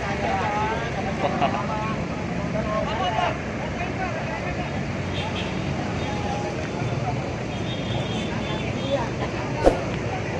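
People talking in a crowd over the steady low rumble of idling diesel tour bus engines, with one sharp knock near the end.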